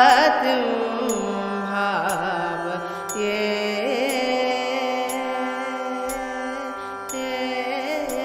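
Carnatic music in Natakurunji raga, Adi tala, in its closing passage: a melody that slides between notes with ornaments in the first couple of seconds, then settles into held notes over a steady drone, with faint percussive ticks roughly once a second.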